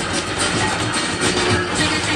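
Music playing loudly over the steady running noise of a coin-operated kiddie train ride.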